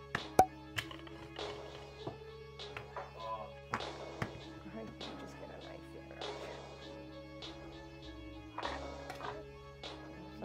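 Background music with steady held notes. Over it come a number of sharp knocks of a wooden rolling pin and knife on a kitchen countertop as dumpling dough is rolled out and cut, the loudest about half a second in.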